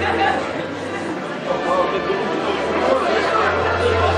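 Many people talking at once in a hall: a steady audience murmur with no single voice standing out, over a low hum that drops out about a second in and comes back about a second later.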